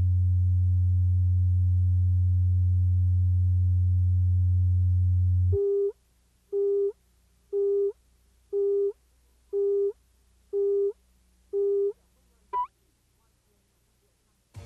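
Tape leader audio: a steady low line-up tone for the first five and a half seconds, then a countdown of seven short beeps once a second, and a brief blip a little later.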